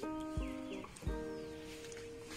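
Background music: plucked string notes over steady held tones, with two low bass thumps in the first half.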